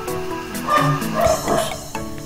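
Background music playing, with a dog barking in a short outburst around the middle, the loudest sound.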